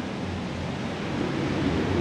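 Steady outdoor background noise: a low hum under an even hiss, with a faint trace of a man's voice near the end.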